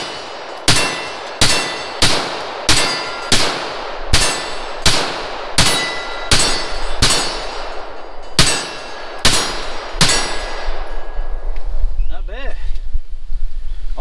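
A 9mm Glock-pattern pistol, a Polymer80 build with a Grey Ghost Precision slide, fired at a steady, unhurried pace. There are about fourteen loud shots, each a little over half a second apart with a short ringing tail, and they stop about ten seconds in.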